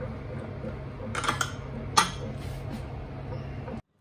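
Metal clinks from a stainless steel pressure cooker lid being handled: a few light clinks just over a second in and one sharp clink at about two seconds, over a steady low hum. The sound cuts off suddenly near the end.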